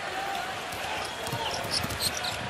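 Basketball arena crowd noise, a steady hum, with a basketball being dribbled on the hardwood court; a few faint thumps come in the second half.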